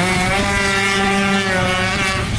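Yamaha F1ZR two-stroke underbone race bike's engine at high revs on track, the pitch held high and then dropping near the end.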